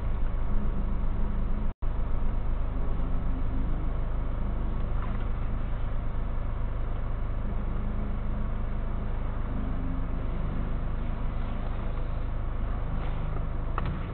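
Steady low rumble of a stationary car's engine idling, heard from inside the cabin, with a split-second dropout in the recording about two seconds in.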